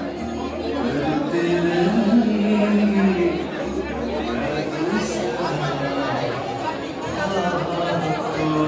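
Crowd of people chattering together in a large hall, many voices overlapping, with music playing underneath.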